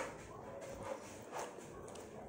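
Quiet eating sounds: chewing and soft mouth clicks as pork chop is eaten off the bone by hand, with two sharper clicks about a second and a half apart.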